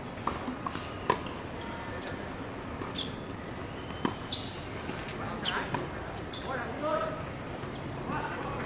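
Tennis ball knocks, ball striking racket strings and the hard court, a few sharp hits in the first second, the loudest about a second in, and another about four seconds in. Players' voices come in near the end.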